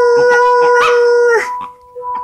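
A dog howls in one long, steady note along with a handpan being struck. The howl falls away in pitch and stops about a second and a half in, leaving the handpan's notes ringing.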